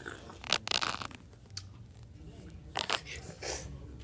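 Crunching and chewing on a Toxic Waste extreme-sour hard candy, heard as a few short bursts.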